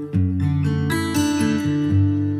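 Background music: an instrumental passage of a song, with plucked guitar notes ringing over sustained tones.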